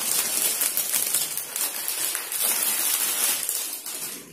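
Clear plastic packaging crinkling and rustling steadily as a garment wrapped in it is handled, a dense crackle of many small clicks. It fades away just after the end.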